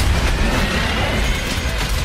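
Trailer music over battle effects: a sharp explosion blast right at the start, with a deep rumble running on beneath and a few lighter impacts.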